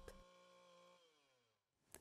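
Near silence: the faint, steady sound of a small petrol-engine earth auger running, which then slows, falling in pitch, and fades out by about a second in. A short click comes near the end.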